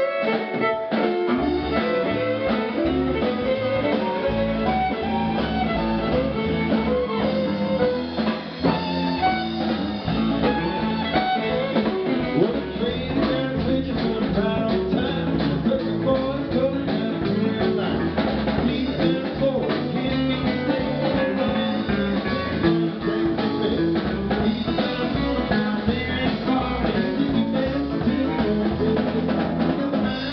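Live country-rock band playing an instrumental passage: electric guitar over bass guitar, keyboard and drum kit, with no singing. The bass and drums come in about a second in.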